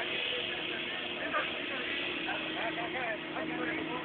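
Faint, distant chatter of several voices, with a steady low hum underneath.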